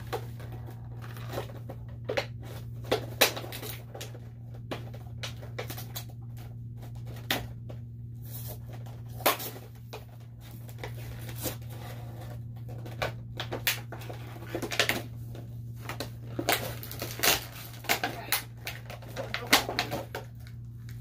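Packaging being handled and opened by hand: irregular clicks, crackles and knocks, some sharp, scattered throughout, over a steady low hum.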